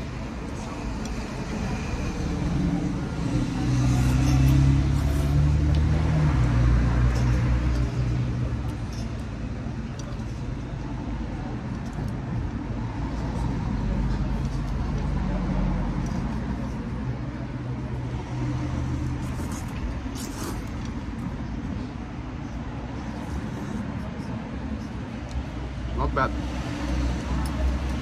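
Street traffic: a motor vehicle's low engine rumble close by, swelling about four seconds in and easing off after about eight seconds, with steady traffic noise underneath.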